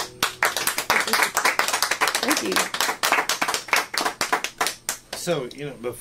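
A small audience clapping by hand at the end of a song. The clapping thins out after about five seconds as a voice starts speaking.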